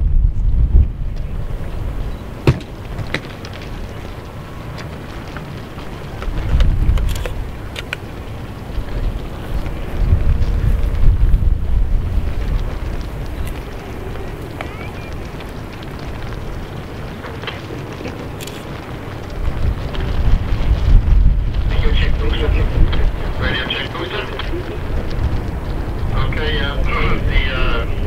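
Wind buffeting the microphone outdoors: a low rumble that swells and fades in gusts, with a few faint clicks. Faint voices come in near the end.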